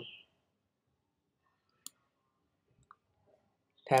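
Two faint computer mouse clicks about a second apart, otherwise near silence.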